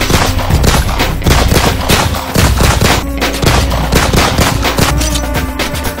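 Rapid gunfire sound effects, a dense run of shots, laid over title music.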